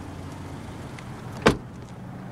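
A car's rear passenger door being shut: one sharp thud about one and a half seconds in, over a low steady hum.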